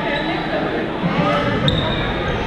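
Busy indoor badminton hall ambience: echoing, overlapping chatter of players, with scattered thuds and clicks of play on the courts and a brief high squeak about three-quarters of the way through.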